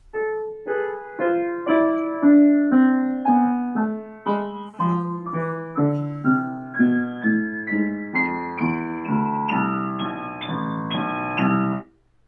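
Upright piano playing a slow A minor scale with both hands, single notes struck about two a second and coming a little faster in the second half. It stops abruptly just before the end. Heard over a Skype video call.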